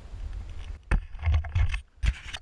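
Wind buffeting an action camera's microphone with a low rumble, growing into louder gusts about a second in, broken by a few sharp clicks and scrapes as the camera on its pole is moved.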